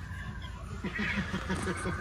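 Laughter, a quick run of short pulses starting a little under a second in.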